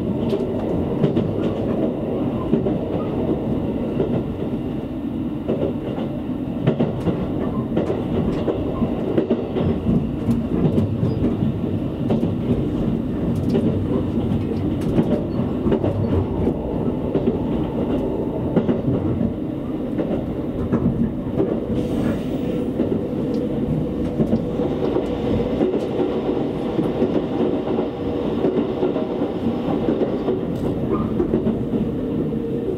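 Cabin running noise of a JR Kyushu 787-series electric express train at speed, heard from inside the passenger car: a steady low rumble of wheels on rail with scattered faint clicks.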